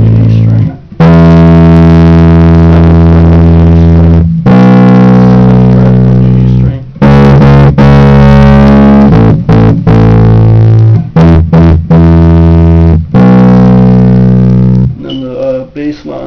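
Electric bass guitar playing a punk rock bassline: several long held notes of a few seconds each, with a run of shorter, quicker notes in the middle.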